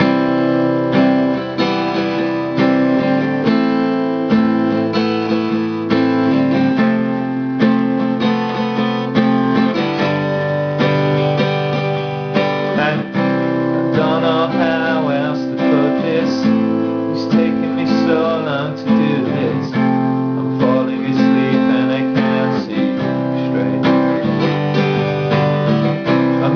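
Acoustic guitar strummed in a steady rhythm through a chord progression of C, A minor and F.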